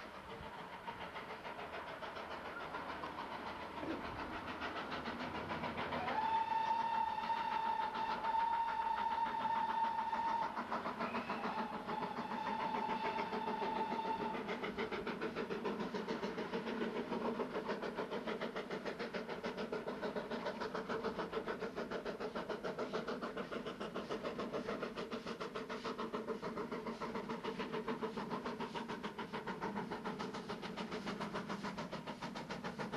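Steam locomotive whistle giving two long blasts, the first the longer and louder, over the rapid exhaust beat of the double-headed GWR steam locomotives 6024 and 5029 working hard up a steep bank. The exhaust beat carries on steadily after the whistle stops.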